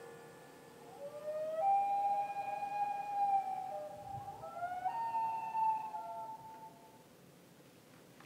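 A common loon's wail: a long call that slides up and holds, then breaks abruptly to a higher held note about five seconds in, and fades out near the end.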